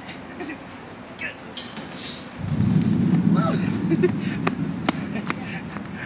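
A person going down a long stainless-steel playground slide: a steady low rumble that starts suddenly a couple of seconds in and lasts about three seconds.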